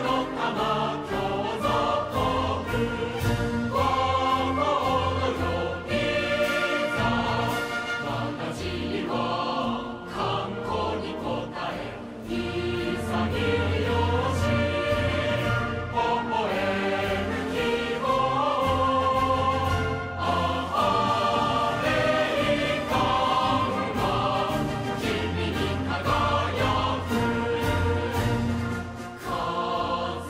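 Background music with singing voices over a steady beat.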